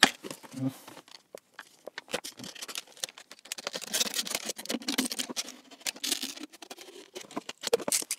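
A thin plastic drinks bottle being cut around with a blade, the plastic crackling and crinkling in a run of small sharp clicks that are thickest in the middle.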